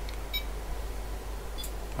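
A single short electronic beep from bench test equipment as a front-panel button is pressed, about a third of a second in, over a steady low hum.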